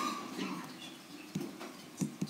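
Quiet pause with a few faint taps and scratches of a pen on a writing surface as a short arrow is drawn.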